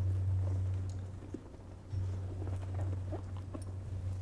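A steady low hum, breaking off briefly about a second and a half in, with faint rustling and light knocks of someone searching through his things.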